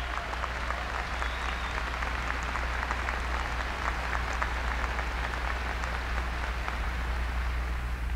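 A large audience applauding: a dense, steady patter of many hands clapping.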